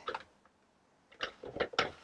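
Plastic Sentro 48-needle knitting machine ticking as its crank handle is turned a short way: one click at the start, then a run of irregular ticks in the second half.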